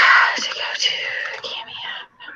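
A person whispering: breathy, hissy speech sounds without a spoken tone, stopping at the end.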